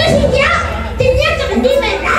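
Speech only: a man talking in Spanish into a handheld microphone, amplified through the PA.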